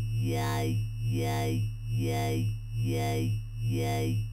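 Talking dubstep wobble bass from Ableton Live's Operator synth: one held square-wave bass note whose low SVF filter is swept by an LFO, with Redux downsampling giving it a vowel-like 'yai' mouth sound. It wobbles evenly a bit more than once a second. As the filter frequency is turned down, the vowel darkens toward 'yay'.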